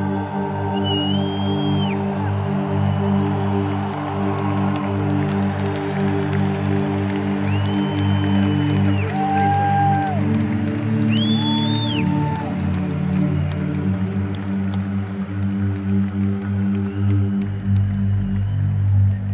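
Live concert sound in a stadium: a sustained low synthesizer drone chord from the PA, with several long, piercing whistles from the crowd rising over it, about five of them, plus a faint crowd hubbub.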